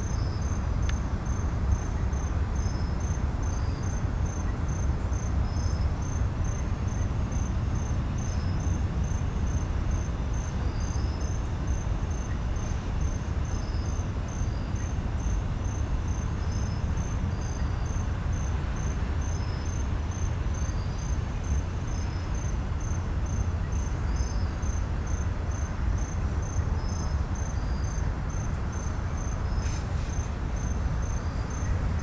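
Crickets chirping in a steady, regular pulse, with a second insect chirping irregularly at a slightly lower pitch, over the steady low rumble of a freight train's cars rolling past.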